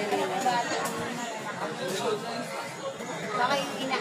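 Background chatter: people talking indistinctly, with no words clearly made out.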